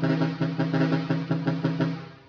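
Pair of chrome trumpet horns driven by a Cicada horn relay, sounding one steady-pitched tone chopped into rapid pulses, about seven a second, in a programmed pattern. The sound cuts off at the end.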